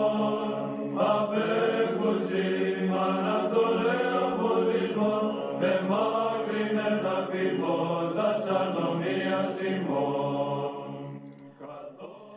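Church-style vocal chant: voices sing slow, gliding melodic lines over a steady held low drone, and the chant fades out near the end.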